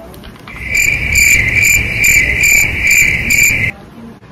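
Wire whisk beating cupcake batter in a stainless steel mixing bowl: the bowl rings with a steady high tone while the whisk strokes pulse about two and a half times a second. The sound cuts off suddenly shortly before the end.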